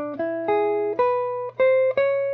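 Archtop electric guitar played clean: a short rising blues phrase of single notes and two-note pairs, each picked and let ring, a new note about every third to half second.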